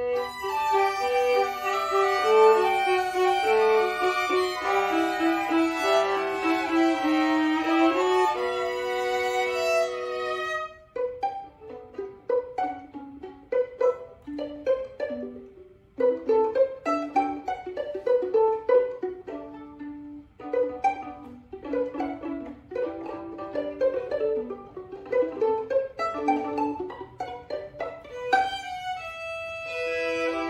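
A trio of violins playing a melody: long bowed notes for about the first ten seconds, then a stretch of short plucked notes, with bowed playing returning near the end.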